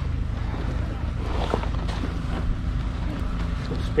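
A steady low mechanical drone, as of an engine running nearby, with faint voices in the background.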